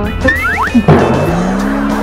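Cartoon-style sound effects over background music: a few quick upward whistling glides, then a sudden hit just before a second in, followed by a low boing-like tone that swoops up and holds.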